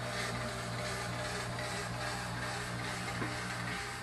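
Steady electric hum with an even hiss from a fog machine blasting fog through a home-built iceless fog-chiller box, its blower and water pumps running.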